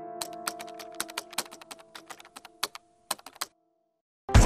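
Typing on a laptop keyboard: a quick, irregular run of key clicks, heard over a held background-music chord. Clicks and chord stop together about three and a half seconds in.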